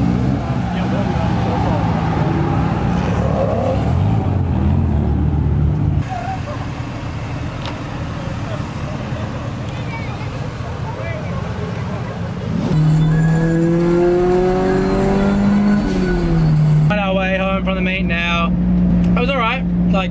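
Car engines running at low revs among the cars. A little past the middle, one engine note rises steadily for about three seconds as a car accelerates, then drops back. Voices come in near the end.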